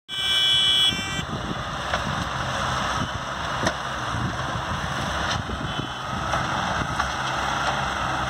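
Engines of farm tractors and a sugarcane grab loader running steadily while the loader lifts cane onto a cart, with a few sharp clanks. A high beeping tone sounds during the first second.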